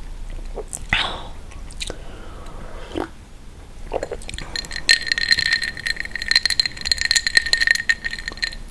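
Close-miked sips and swallows from a glass of water, with soft mouth sounds. About five seconds in, a steady high two-note tone starts with rapid clinks over it and runs for about three seconds.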